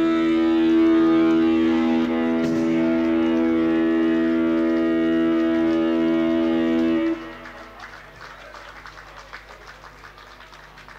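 Live rock band's electric guitars ringing out a held chord, steady in pitch, that cuts off suddenly about seven seconds in. Faint live-room noise follows.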